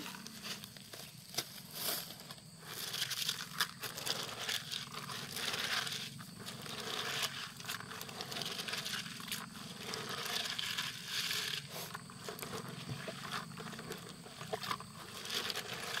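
Hands mixing and squeezing raw bean sprouts with salt and a little water in a plastic bucket: irregular rustling and scraping, with salt poured in from a plastic bag at the start.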